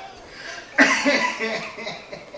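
An adult laughing: a sudden breathy, cough-like burst of laughter a little under a second in, fading away over about a second.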